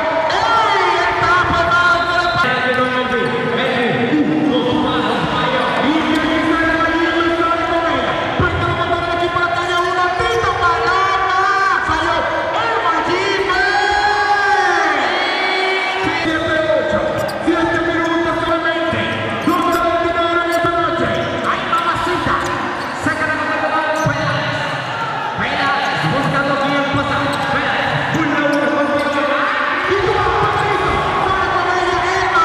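Basketball dribbled on a hardwood gym floor under loud, continuous voices that fill the hall, with a few sharp clicks in the second half.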